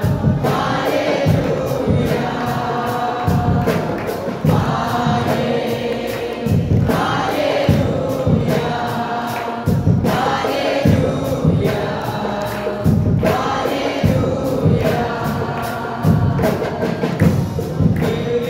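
Worship leaders and congregation singing a worship song together over microphones, with a steady percussion beat.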